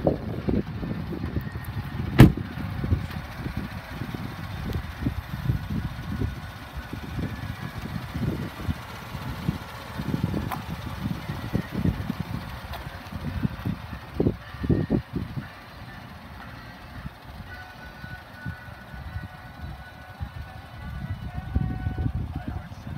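Wind buffeting and handling noise on a handheld microphone, an uneven low rumble, with one sharp loud bang about two seconds in that fits a pickup truck's door being shut.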